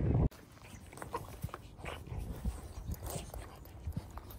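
A French bulldog rolling on its back in grass, making a string of short, separate sounds with its breathing and body against the grass. It opens with a loud low rumble that cuts off suddenly a moment in.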